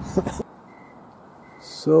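A short laugh over car road noise that cuts off suddenly, then quiet outdoor ambience in which a cricket gives two faint, high, steady chirps, each about a third of a second long.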